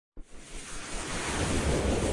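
Whoosh sound effect of an animated logo intro: a rushing noise that starts with a brief hit and swells steadily louder.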